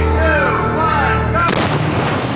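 A sudden loud explosion about one and a half seconds in, followed by a dense noisy tail. Before it there are voices and a low musical drone.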